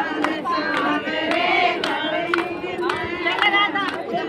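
Women singing a Haryanvi devotional bhajan together, with hand claps keeping the beat about twice a second.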